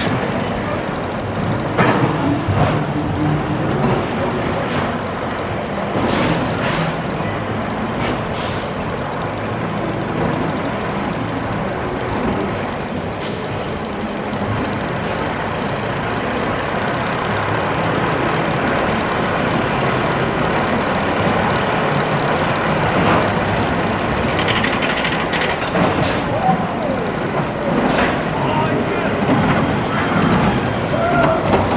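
Wild mouse roller coaster cars running on their steel track: a steady rumble with sharp clanks and clicks scattered through, several close together near the end.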